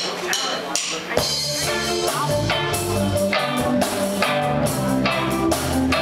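Live rock band playing: electric guitar, bass guitar and drum kit, with regular drum and cymbal strokes keeping a steady beat. The bass and full band fill in about a second or two in.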